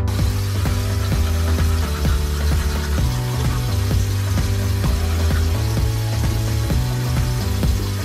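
Background music with a steady beat and a bass line that moves between held notes.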